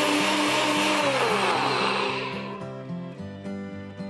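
Bullet-style personal blender churning peanut fibre with water, its motor running loud, then winding down with a falling whine about a second in and fading out around halfway through. Background music runs underneath.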